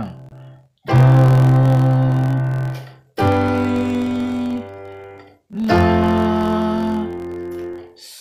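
Yamaha PSR arranger keyboard in a piano voice playing three full chords, each with an octave in the bass. The chords step down the scale. Each is struck, held about two seconds while it fades, then released before the next.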